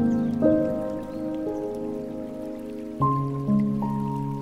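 Slow, soft solo piano playing sustained chords, a new chord struck every second or so, over a faint patter and trickle of water from a bamboo water fountain.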